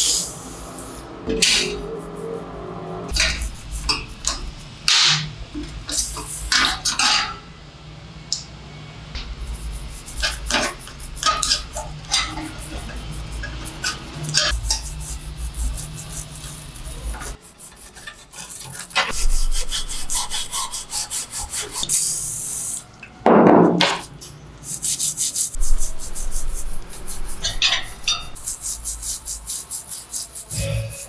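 A toothbrush scrubbing oily steel engine gears and clutch plates in quick back-and-forth strokes. Sharp clicks and knocks of metal parts come in the first part, a short spray hiss comes about two-thirds through, and a single heavier thud follows soon after.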